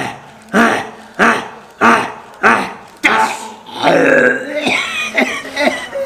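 A man belching loudly over and over, about five belches roughly 0.6 s apart in the first three seconds, followed by rougher, irregular voice sounds.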